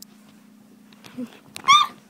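A short, high-pitched yelp near the end, over a steady low hum.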